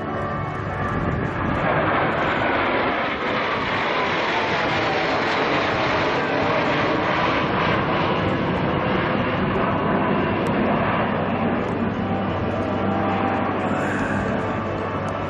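Formation of military jets flying over, a loud steady jet roar with a whine that falls in pitch as they pass.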